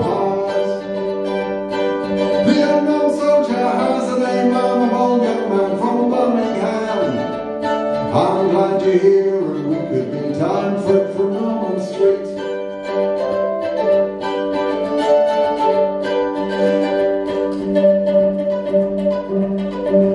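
A man singing a folk song with his own guitar accompaniment, the voice held in long, bending lines over steady plucked strings.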